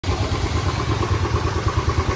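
Motorcycle engine running steadily while riding through floodwater, with water spraying off the tyres.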